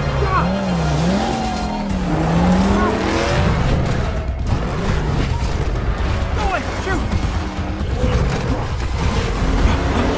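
Animated-film soundtrack of car engines running with a wavering, gliding pitch and tires skidding, over music.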